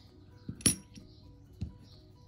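Bronze Irish pennies clinking as a hand handles and sets them down: one sharp clink about two-thirds of a second in, and a couple of fainter ticks, over faint background music.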